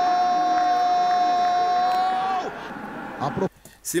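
Television football commentator's long drawn-out goal cry ("gooool"), held at one steady high pitch and breaking off with a falling tail about two and a half seconds in. A short shouted word follows just before a brief gap.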